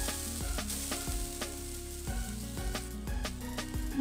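Grated coconut sizzling in hot ghee in a non-stick frying pan as it is poured in and stirred: a steady hiss, with faint background music underneath.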